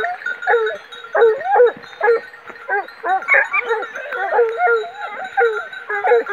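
A pack of scent hounds giving tongue, several dogs baying in overlapping, repeated rising-and-falling calls, two or three a second. This is the rapproché: the hounds working a wild boar's trail.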